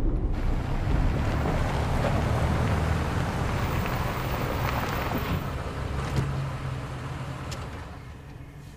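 A rushing, wind-like noise over a low rumble, starting suddenly and fading slowly over the last few seconds.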